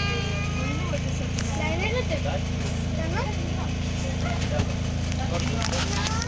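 Steady low hum of an idling safari bus engine, with scattered chatter of passengers over it.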